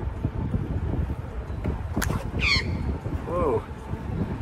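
Australian magpie dive-bombing a cyclist, striking his bike helmet with a single sharp whack about halfway through, followed at once by a high squawk and another call near the end. Wind and riding rumble run underneath.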